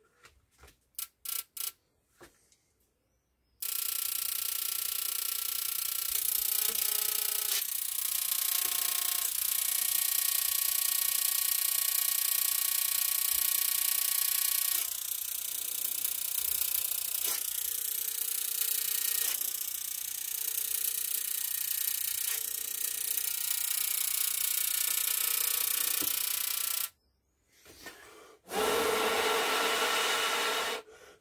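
High-voltage electrical discharge powering a plasma tube: a loud, steady electrical buzz with a high whine that switches on abruptly about four seconds in and cuts off suddenly near the end, the whine gliding upward a few times in the middle. A few sharp clicks come before it starts.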